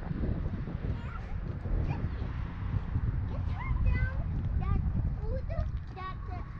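Wind rumbling on the microphone, with a run of short, high yips from an animal, mostly in the second half.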